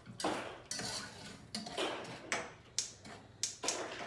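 A spoon stirring sugar and water in a saucepan, clinking and scraping against the pot in short, irregular strokes.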